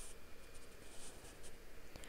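Faint scratching of a pen writing, two or three soft strokes over quiet room tone.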